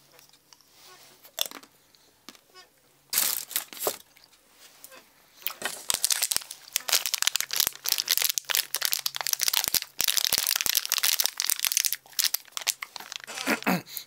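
Packaging crinkling and tearing as the bag of Cadbury Mini Eggs is opened: a few sharp crackles about three seconds in, then steady close crackling through most of the rest, with a brief pause near the end.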